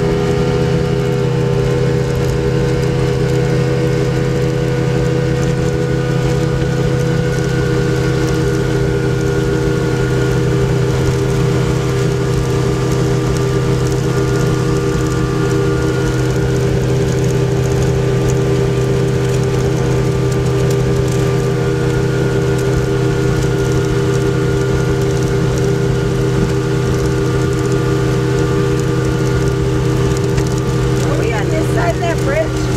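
Speedboat engine running steadily at cruising speed, an even drone over a constant rush of noise, heard from the cockpit behind the windshield.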